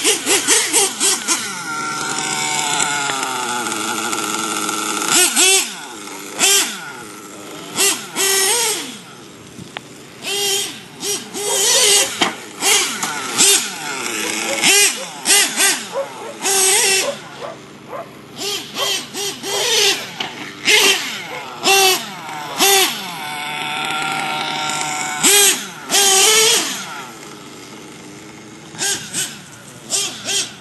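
Clockwork-modified Picco Boost .28 nitro RC engine running through a tuned pipe on its first tanks of fuel, while still being broken in. It revs up and down repeatedly, with many short high-pitched bursts of full throttle between stretches of lower, falling pitch.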